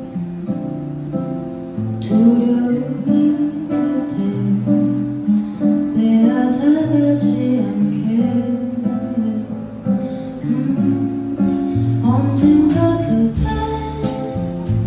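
A small jazz band playing live, with an acoustic guitar to the fore over bass guitar and piano. Sharp cymbal strokes come in near the end.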